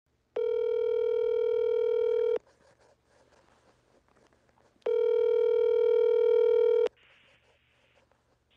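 Telephone ringback tone, the ringing a caller hears while a call rings through: two steady rings of about two seconds each, about two and a half seconds apart.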